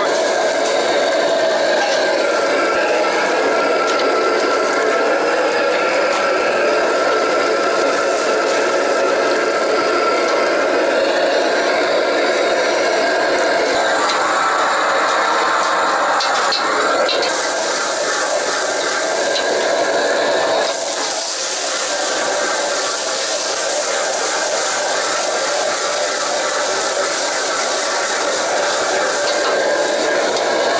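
A metal ladle scraping and stirring diced ingredients frying in a wok over a gas wok burner, with a steady rush and sizzle throughout. A little over halfway through the hiss grows brighter.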